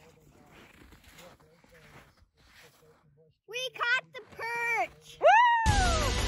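A child's excited, high-pitched shrieks come about three and a half seconds in, after a quiet start, ending in one long cry that rises and then falls. Music starts suddenly just before the end.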